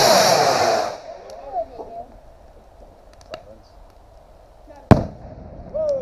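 A firework rocket launches with a rushing whoosh that falls in pitch over about a second. About five seconds in comes a single sharp, loud bang of a firework bursting.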